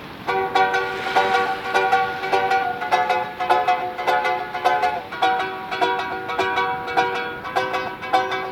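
A small wooden plucked string instrument strummed in a quick, steady rhythm, playing chords as an introduction to a song.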